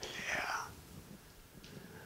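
A man's faint, breathy vocal sound without voice, lasting about half a second, then near-quiet room tone for the rest.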